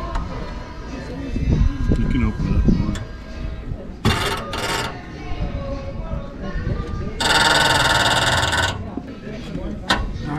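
Cordless impact wrench running on the lug nuts of a boat trailer wheel: two short bursts about four seconds in, then a longer, louder run of about a second and a half near the end.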